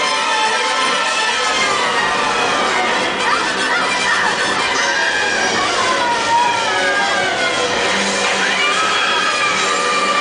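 Loud show music playing over loudspeakers while an audience cheers and children shout and whoop over it.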